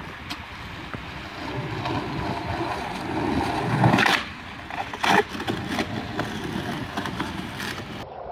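Skateboard wheels rolling over paving, growing louder as the rider comes in. Then the board works a sloping concrete ledge: a loud clack about four seconds in and another sharp one about a second later, followed by rolling on.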